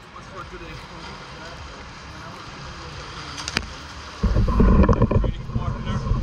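Swimmers splashing and churning the water in an indoor pool, in a steady noisy wash. About four seconds in, a sudden loud low rumble of water and handling noise right at the camera, with a short click just before it.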